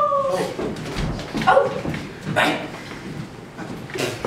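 A person's short whine-like vocal sound at the very start, falling slightly in pitch, followed by two brief vocal noises.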